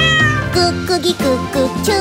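Upbeat children's song with a run of short meows over the accompaniment in its second half.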